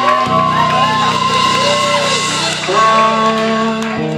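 Live blues-rock band playing, with an amplified harmonica wailing in bent, sliding notes over a held low bass and guitar note.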